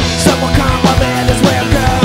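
Fast melodic punk (skatepunk) rock: distorted electric guitars over a quick, steady drum beat.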